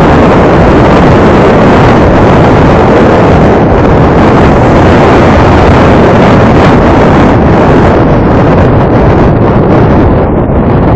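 Loud, steady wind rush on the microphone of a camera travelling on a moving motorcycle, mixed with the motorcycle's engine and road noise.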